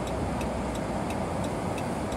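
A car's turn-signal indicator ticking steadily, about three ticks a second, over the low steady hum of the car's cabin as it waits at a light.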